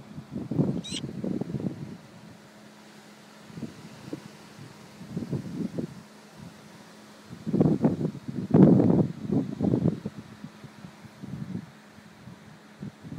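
Irregular low rumbling bursts of wind buffeting the microphone, heaviest in the second half, over a faint steady hum. A single brief high chirp comes about a second in.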